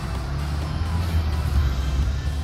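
Background music over a steady low rumble.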